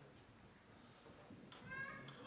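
Near silence, then about one and a half seconds in a click, and a high voice starts a long held note.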